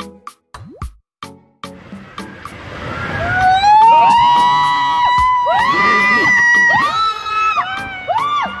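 A short choppy music beat, then water rushing through an enclosed water-slide tube with a rider's long screams rising and falling in pitch, loudest about midway.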